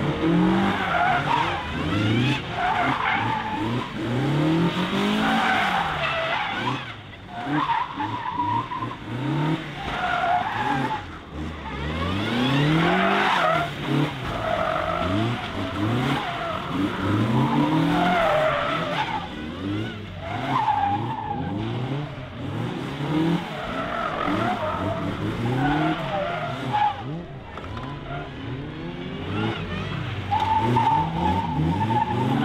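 A small hatchback autotest car driven hard, its engine revving up and down over and over as it accelerates and brakes between pylons, with tyres squealing through repeated tight spins and handbrake turns on tarmac.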